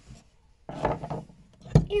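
Centrifugal clutch shoe assembly of a pocket-bike engine being prised off its shaft with a screwdriver. There is a scrape of metal about a second in, then a sharp knock near the end as the clutch comes free.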